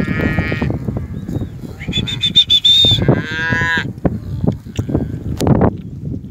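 Brangus cattle, cows and calves, mooing and bawling. A high call comes at the start, a higher pulsing call about two seconds in, and a falling call about three seconds in, over a steady low rumble as the herd moves.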